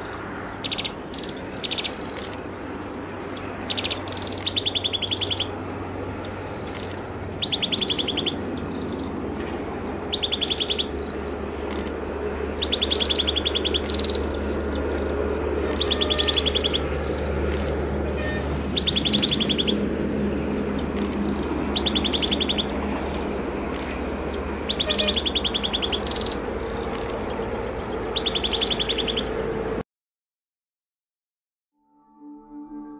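Common tailorbird chirping: short rapid trills of high, quickly repeated notes, each under a second long, coming about every two to three seconds over a steady low hum.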